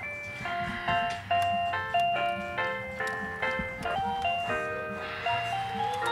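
Musical Christmas train decoration playing an electronic Christmas tune: a simple melody of clear, chime-like notes, a few notes a second.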